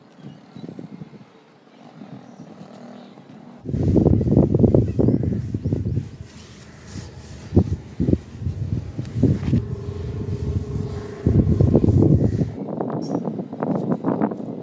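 Wind buffeting the microphone in a loud low rumble that starts abruptly about four seconds in and stops near the end. It is broken by a few sharp knocks as a solar panel is handled and wiped with a cloth.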